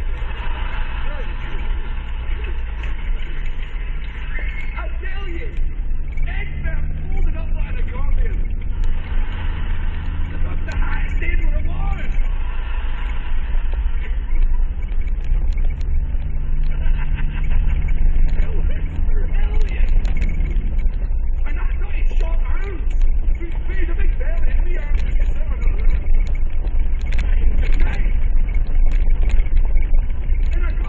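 Off-road vehicle heard from inside the cabin on a rough gravel track: the engine's pitch rises and falls twice as it revs over a steady low road rumble, with frequent knocks and rattles from the bumps.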